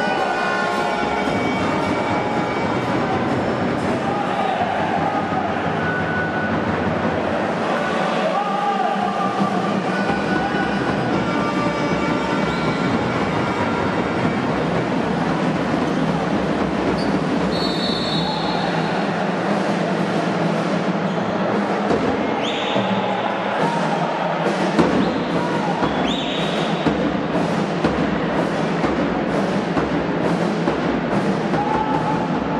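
Sports-hall crowd and court noise during a basketball game: a steady mass of crowd chatter, with a few short high squeaks of basketball shoes on the wooden floor in the second half.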